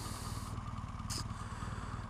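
BMW R1200GS boxer-twin motorcycle idling at a standstill, a low steady hum, with two brief hisses, one at the start and one about a second in.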